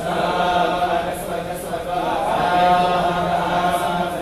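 Hindu devotional chanting: a voice chants a mantra in long, held, slowly shifting notes over a steady low drone.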